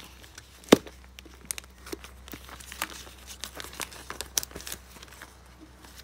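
Clear plastic binder page crinkling and rustling as it is worked onto the metal rings of a ring binder, with scattered small clicks and one sharp click a little under a second in.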